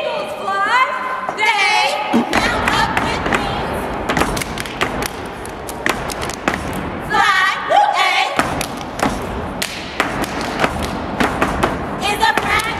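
Step team stamping and clapping in a fast, dense rhythm. Group voices chant in the first two seconds and again briefly about two thirds of the way through.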